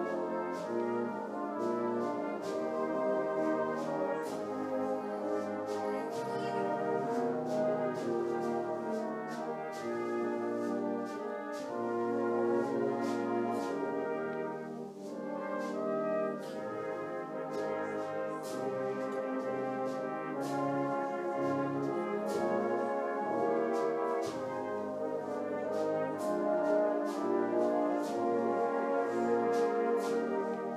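Brass band playing a slow hymn-tune arrangement for cornet trio with band accompaniment, in sustained chords, with a brief softer moment about halfway through.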